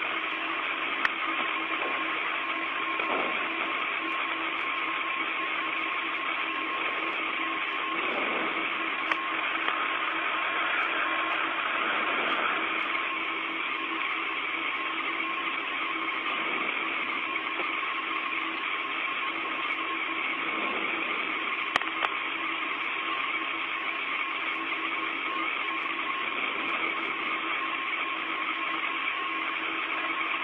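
Steady hiss of static on an open radio communications loop, with a faint steady hum and scattered sharp clicks.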